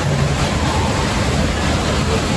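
Steady rush of flowing water, an even noise that neither rises nor falls.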